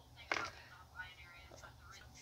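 A person's faint whispering, with one short sharp noise about a third of a second in.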